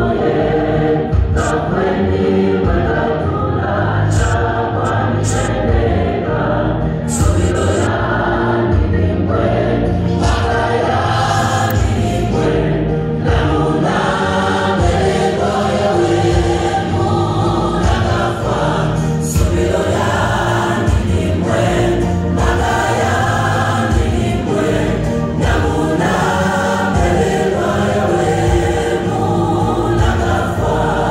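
Gospel choir singing live, with a steady pulsing beat and bass underneath.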